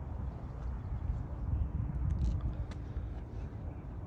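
Low, uneven outdoor rumble with a faint steady hum in the middle.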